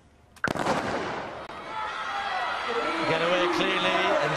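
A starter's gun fires once, sharp and loud, about half a second in, starting a 200 m sprint. The stadium crowd's noise then swells, and a man's voice joins in during the second half.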